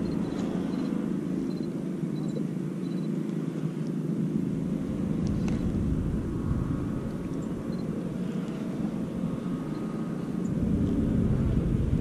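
Steady low rumble of wind and water noise on a small boat on open water, with a few faint ticks. The deepest part of the rumble grows stronger about halfway through and again near the end.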